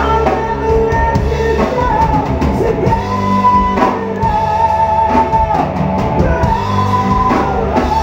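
Live rock band playing: singing over drum kit and guitar.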